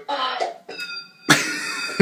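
Hip-hop music playing under a person's laughter, with a sudden loud vocal burst a little past halfway.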